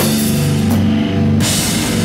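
Live rock band playing loud: electric guitars and bass holding chords over a drum kit. The cymbal wash drops out for about half a second midway, then comes back in.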